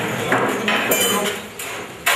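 Clatter of hard objects being handled: sharp knocks, and a short ringing clink about a second in.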